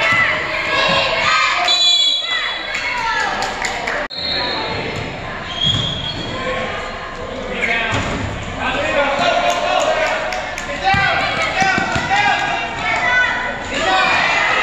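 A basketball bouncing and thudding on a hardwood gym floor during play, under a continuous mix of indistinct voices from players and spectators calling out, in a large echoing gym.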